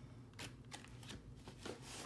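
Double-sided scrapbook paper sheets being handled and leafed by hand: a few faint, short paper rustles and flicks.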